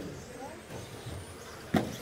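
Radio-controlled short-course stock trucks (Traxxas Slash class) running on an indoor carpet track, with one sharp knock near the end.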